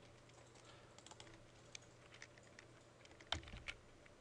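Faint computer keyboard typing: a few scattered keystrokes, with a louder cluster of clicks near the end.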